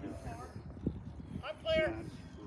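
Brief snatches of men's voices, the clearest about one and a half seconds in, with light footsteps on pavement.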